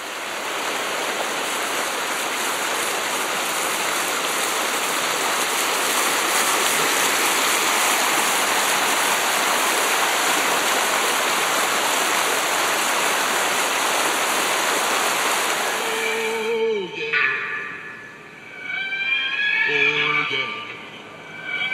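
Rushing mountain stream running over rocks: a steady water noise that cuts off suddenly about three and a half seconds before the end, followed by a few short pitched sounds with sliding tones.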